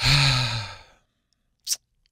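A man sighing: a breathy, voiced exhale that fades out over about a second, after a remark about the war. A short, sharp breath sound comes near the end.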